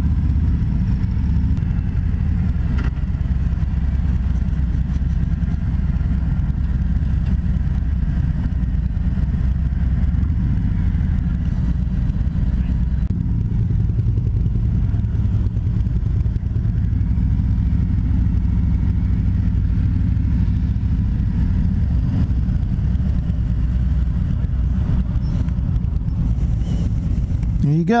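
2020 Harley-Davidson Road King Special's Milwaukee-Eight 114 V-twin running steadily at low road speed, heard from the rider's seat as a continuous low rumble.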